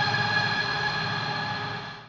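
Electric guitar played through an Eventide H9 harmonizer/effects pedal: a held chord rings on and fades steadily, dying away near the end.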